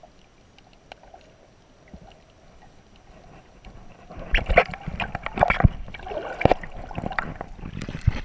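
Water heard from a camera held under the surface. For the first few seconds there is only a faint muffled hush. From about halfway through come louder, irregular splashes and knocks of water against the camera as it nears the surface.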